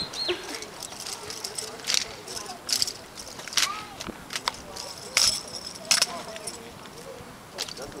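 Sharp, irregularly spaced slaps and knocks from an armed drill team's rifle handling, roughly one a second: hands striking drill rifles and rifle butts hitting the pavement.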